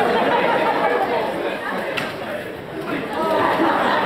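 Many students chattering at once in a crowded lecture hall.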